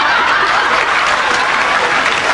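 Studio audience applauding with some laughter, a steady dense clatter of many hands clapping.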